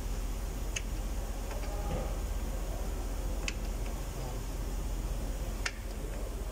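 Three sharp metallic clicks a couple of seconds apart as a wrench on the rear brake caliper turns and presses its parking-brake piston back in, a little at a time.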